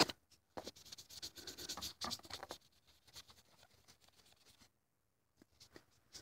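A small sponge rubbing over the chalkboard surface of a plastic model horse, wiping off chalk marks in faint scratchy strokes for the first couple of seconds, then near silence with a few light ticks.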